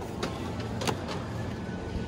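Steady low supermarket background hum, with two light clicks about a quarter second and a second in.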